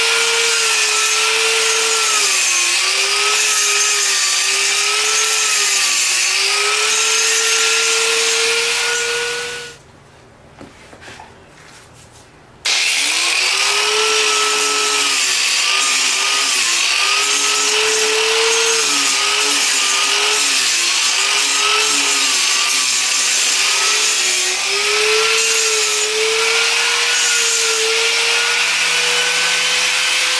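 Angle grinder with a concrete grinding wheel grinding down a rough concrete and plaster edge, its motor whine dipping and recovering as the wheel bites under load. About ten seconds in it winds down and stops for roughly three seconds, then starts again, spins back up and keeps grinding.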